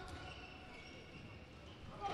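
Faint ambience of a handball game in an indoor hall, with players running on the court floor and no distinct ball bounces.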